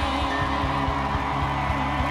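Live country band playing an up-tempo song, with a steady kick-drum beat under sustained guitar and keyboard tones.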